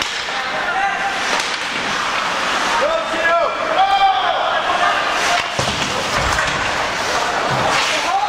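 Ice hockey play in an indoor rink: a steady wash of skates and sticks on the ice, with raised voices shouting around the middle and a sharp knock of a puck or stick a little past halfway.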